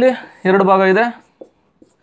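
A man's voice speaking briefly, then a quiet stretch with a couple of faint short strokes of a marker drawing on a whiteboard.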